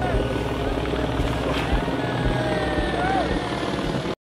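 A steady low rumble with rapid pulsing, with faint voices in the background.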